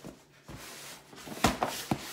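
A cardboard shipping box being handled: a soft scraping, then two sharp knocks near the end as it is picked up and tipped.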